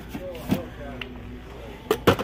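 Faint voices in the background of a store aisle, with a few light knocks and taps from boxed toys being handled on a shelf peg, the sharpest one near the end.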